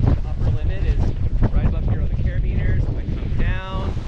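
Wind buffeting the microphone of a paraglider in flight, a loud steady rumble. Snatches of the pilot's voice come through it, with a short held vocal sound near the end.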